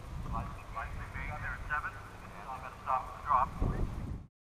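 A distant, thin-sounding voice in short broken phrases, like speech over a two-way radio, with a steady low rumble underneath. The voice is loudest near the end.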